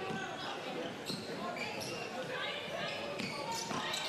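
Basketball being dribbled on a hardwood court in a large indoor hall, with faint players' calls and crowd voices in the background.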